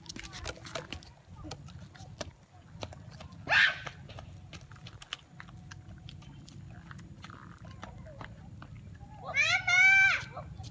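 Children shouting: a short loud yell about three and a half seconds in, then a long, high-pitched, wavering shriek near the end.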